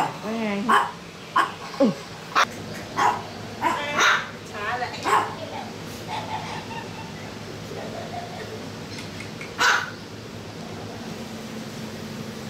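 A dog barking in short, separate barks, a run of them over the first five seconds and one more near the end.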